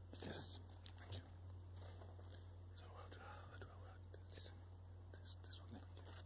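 Near silence: faint, low off-microphone talk, close to a whisper, over a steady low hum.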